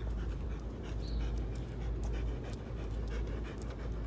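Great Pyrenees dog panting with quick, steady breaths.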